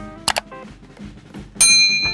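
Background music with subscribe-button sound effects: a quick double click, then a bright bell ding about a second and a half in that rings on.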